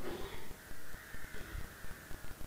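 A bird's harsh, drawn-out call starting about half a second in and lasting over a second, over an irregular low crackle.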